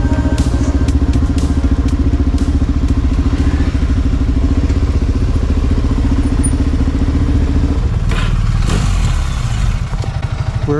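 Suzuki DR-Z single-cylinder dual-sport motorcycle idling with a steady, rapid pulsing beat. Near the end the note changes and a short rush of noise comes in.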